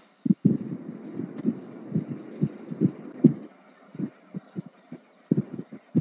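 Soft, irregular low thumps, more than a dozen, over a faint hiss that fades out past the middle.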